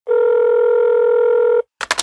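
A steady telephone tone sounds for about a second and a half and cuts off abruptly, followed near the end by a few sharp clicks.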